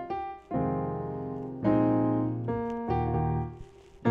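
Piano-voiced keyboard playing sustained chords in E-flat, starting on a C minor add 11 chord. Chords are struck about half a second in and again about a second later, then ring and fade, with a softer change near the three-second mark, dying away just before the end.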